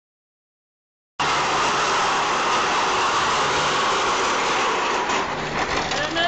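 Small casters of a wheeled office copier rolling over concrete: a steady rumbling rattle that starts about a second in.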